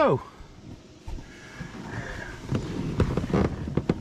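Scattered low thumps and knocks from someone moving about on a boat and handling the camera, a few sharper knocks in the second half, over a faint steady background noise.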